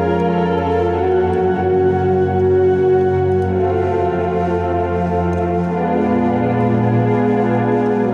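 Yamaha portable keyboard playing sustained two-handed worship chords on a smooth held voice like an organ or string pad, with a low bass note under them. The chord and bass move to a new position about six seconds in.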